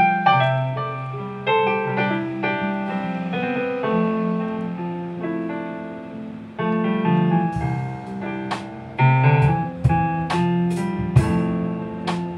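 Live band intro: a stage keyboard with a piano voice plays alone in the first half, then about halfway through the bass and drums come in, with repeated cymbal hits.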